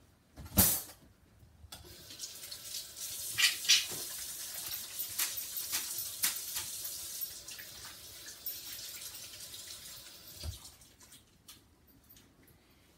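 Kitchen faucet running into the sink as hands are washed under it. The water starts about two seconds in and stops near the end, after a sharp knock at the start and a few clatters early in the running water.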